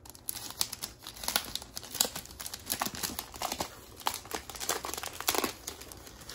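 Plastic shrink wrap on a vinyl LP jacket being opened and peeled back by hand, with dense, irregular crinkling and crackling.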